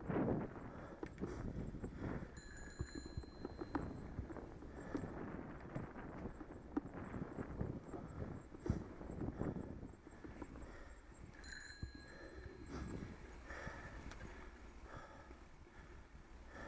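A bicycle ridden along a tarmac path, rattling and knocking over a steady rumble of tyres and wind. A bicycle bell rings briefly twice, about two and a half seconds in and again about eleven and a half seconds in, as a warning to a walker ahead.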